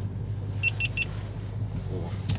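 BMW M5 F90's twin-turbo V8 running at low revs, a steady low drone heard inside the cabin. Three quick high-pitched beeps sound in the first second.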